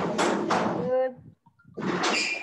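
Interference from unmuted microphones on a video call: two bursts of harsh, noisy sound, with a brief voice-like tone near the end of the first burst, the kind of noise that makes the host mute all participants.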